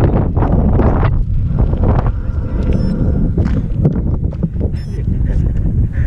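Wind rumbling on the microphone of a bike-mounted camera while a mountain bike rolls over a gravel track, with scattered clicks and rattles from the tyres and bike.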